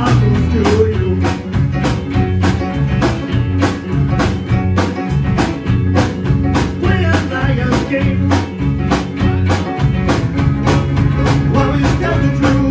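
Live band playing loudly: electric guitar, bass guitar, keyboard and drum kit with a steady beat.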